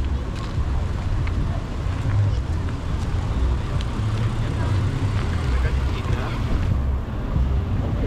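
City street ambience: road traffic going by, under a steady low rumble.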